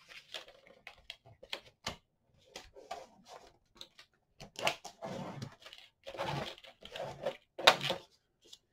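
Patterned craft paper being handled and pressed down onto a plastic scoring board: rustling and crinkling, scattered light taps and clicks, and one sharper tap near the end.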